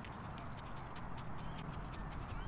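Metal tines of a hand cultivator scratching through garden soil: a quiet run of irregular small clicks and scrapes.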